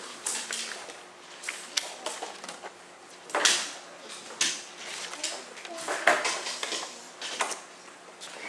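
Scattered rustles, clicks and knocks of people shifting about and handling things close to the microphone, with brief snatches of low talk.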